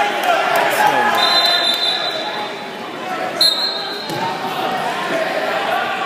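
Indistinct voices and chatter of spectators, echoing in a large gymnasium, with a single sharp thump about three and a half seconds in.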